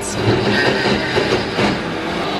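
KitchenAid countertop blender running, quite loud, churning a thick load of frozen açaí purée with banana, avocado and blueberries.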